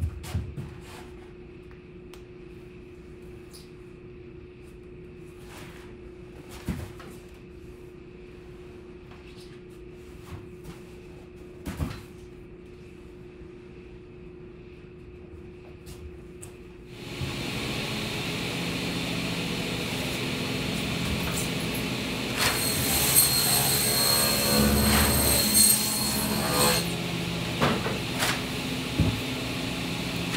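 Rigid foam pieces handled in a workshop, with a few light knocks over a steady hum. About seventeen seconds in, a workshop machine switches on and runs loudly and steadily. A few seconds later it grows harsher and louder with irregular peaks for several seconds.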